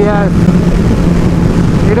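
A 2005 Kawasaki ZX12R's inline-four engine running at steady revs while the bike is ridden, a constant low hum over road and wind rumble on the microphone.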